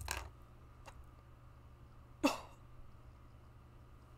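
A single short throat-clear about two seconds in, following a faint click, over quiet room tone with a low hum.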